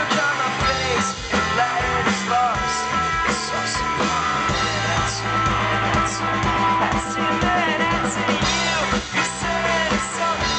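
Rock band playing live, electric guitar to the fore over bass and drums, heard from within the audience.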